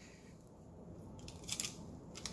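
Utility knife blade slitting plastic film wrap around a rolled canvas: a faint scratchy slicing, with a short cluster of crisp plastic clicks about one and a half seconds in.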